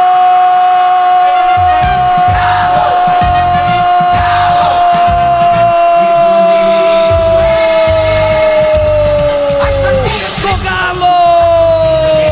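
Radio football commentator's goal cry: one long held shout of "gol" that sinks slowly in pitch for about ten seconds and falls away, then a second shorter one near the end. Under it plays a radio goal jingle with a steady beat.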